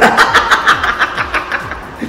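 A man laughing loudly and heartily: a quick run of 'ha' pulses that fades away over about two seconds.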